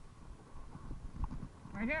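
A man's loud, rising shout of 'yeah!' near the end, over a low rumble and irregular knocks from riding down a rough dirt trail.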